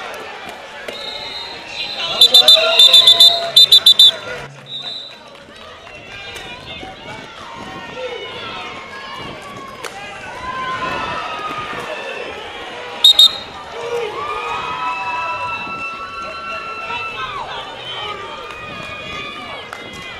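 Referee whistles: a rapid run of short, piercing blasts about two seconds in, the kind of short blasts that call off a roller derby jam, and two more short blasts about thirteen seconds in. Voices and crowd chatter run underneath.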